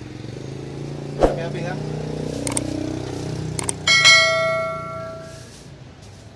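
A steady low engine hum, with a few sharp cracks over it; about four seconds in, a metal object is struck and rings loudly with several clear tones, fading out over about a second and a half.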